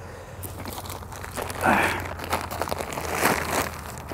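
Plastic bag of bagged garden soil crinkling and tearing as it is pulled open by hand, with two louder bursts of rustling about one and a half and three seconds in.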